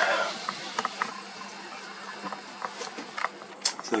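Crickets chirping steadily in a high, continuous trill, with a brief rustle right at the start and a few faint scattered clicks.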